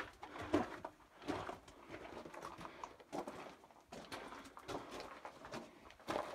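Footsteps crunching and scuffing on the gravel and rock floor of a narrow mine tunnel, about one step a second.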